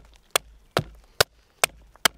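Axe chopping into wood in quick, light, evenly paced blows, about two strikes a second, each a sharp knock.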